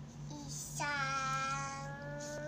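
A young girl's voice singing, holding one long, nearly level note that begins about a second in, after a short sound.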